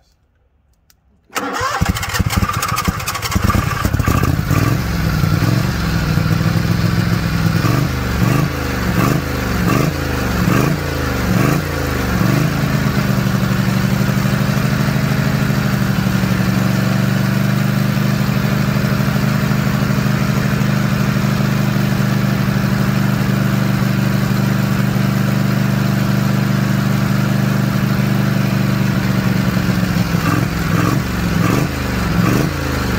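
Small engine on a test stand starting up about a second in, then revved up and back down roughly once a second for about ten seconds before settling into a steady, even run.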